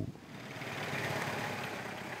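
Open-topped 4x4 driving along a dirt track: a steady mix of engine and tyre noise that fades in just after the start.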